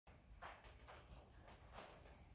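Near silence: room tone with a few faint, soft knocks about half a second apart.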